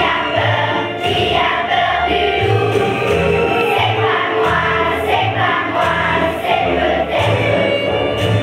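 A large choir of schoolchildren singing a song together, over musical accompaniment with a low bass pulsing about once a second.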